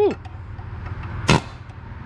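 A pneumatic air hammer fires one short, sharp burst against a cut exhaust-manifold bolt about a second in, trying to drive it out. A steady low hum runs underneath.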